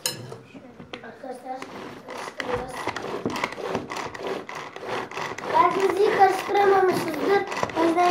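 Plastic pull-cord food chopper being worked by hand: repeated pulls of the cord spin the blades in the bowl with a fast rattling clatter as they chop the food inside. A child's voice comes in over it in the second half.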